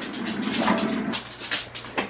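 A dog making a few short vocal sounds.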